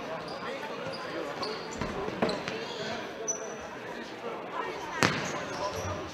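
Futsal ball in play on a sports-hall court: two sharp thuds of the ball, about two and five seconds in, the second the loudest, with short high squeaks of shoes on the floor. Spectators' voices chatter throughout in the large hall.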